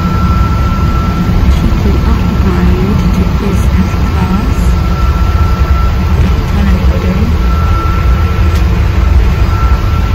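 Airliner cabin noise: a loud, steady low roar with a thin, steady whine above it.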